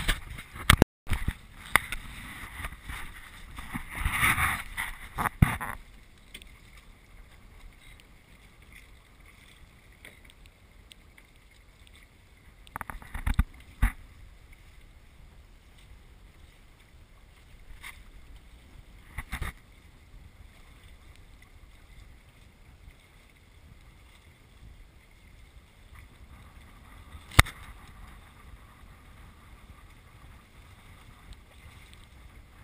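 Water rushing past the hulls of an F-22R trimaran under sail, with wind on the microphone. A louder stretch of rushing and rattling comes in the first few seconds, and a few sharp knocks from the deck gear follow, the sharpest near the end.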